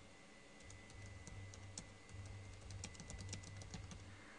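Faint computer keyboard typing: a quick, uneven run of key clicks.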